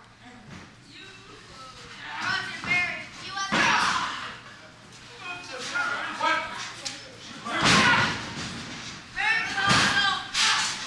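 Two heavy thuds of bodies hitting the wrestling ring, about three and a half and seven and a half seconds in, each followed by a short boom, with shouting voices between them.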